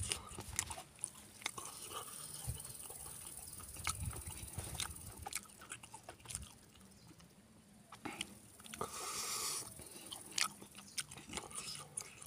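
Close-up eating sounds: a person chewing meat and rice with wet lip smacks and clicks scattered throughout, and fingers squishing the rice and curry. A brief rushing noise comes about nine seconds in.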